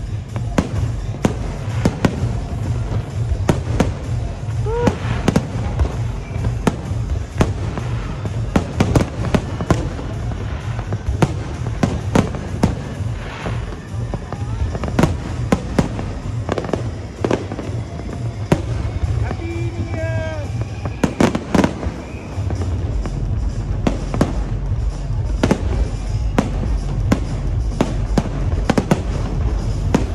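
Aerial fireworks bursting in a dense, irregular run of bangs and crackles, many shells going off a fraction of a second apart.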